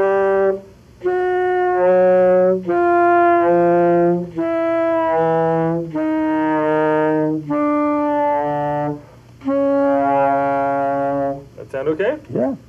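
Alto saxophone playing an overtone exercise: held notes with short breaks between them, a low fingered note alternating with higher overtones played without the octave key. The higher notes step down in pitch from one to the next.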